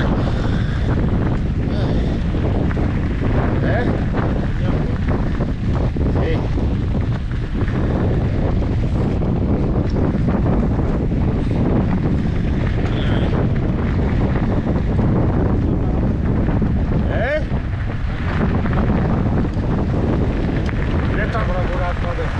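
Heavy wind buffeting the microphone of a mountain bike rolling downhill, over the steady rumble of knobby tyres on loose gravel.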